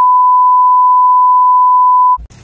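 A single steady, loud, high-pitched beep tone laid over the soundtrack with all other sound cut out: an edit-inserted censor bleep covering speech.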